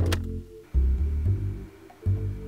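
Background film-score music: a run of low pitched notes, each held for under a second, with a short click at the start.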